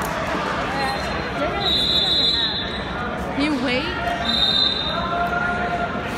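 Many people talking at once in a gym, with two short high-pitched tones, about two seconds and about four and a half seconds in.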